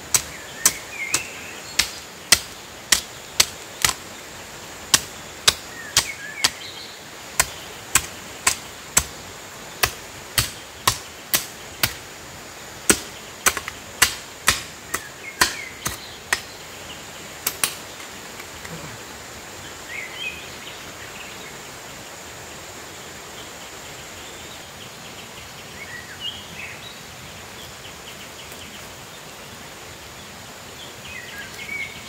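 Hand hoe chopping into stony soil, the metal blade striking the ground in even strokes about two a second, stopping a little past halfway.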